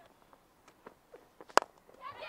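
Near silence with a few faint ticks, broken by one sharp, short click about one and a half seconds in.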